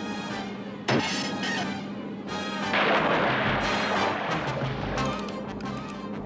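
Cartoon sound effects over the background score: a sudden sharp hit about a second in, then a loud, noisy rush with a low rumble from about three to five seconds.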